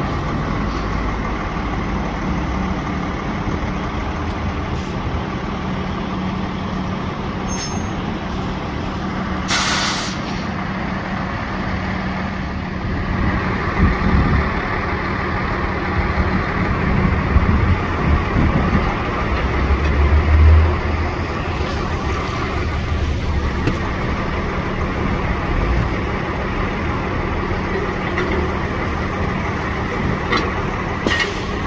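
Heavy utility bucket trucks' diesel engines idling steadily. A brief burst of air hiss comes about ten seconds in, and a deeper rumble swells briefly about twenty seconds in.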